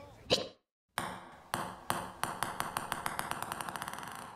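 A hard object hits once, then after a brief gap bounces with impacts that come faster and faster until they run together as it comes to rest.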